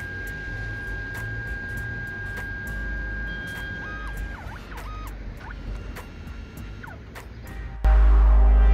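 Kodak Mini Shot instant camera's built-in four-pass printer running its laminating pass: a steady high motor whine with light ticking, which a little past halfway gives way to short rising and falling motor tones as the print feeds out.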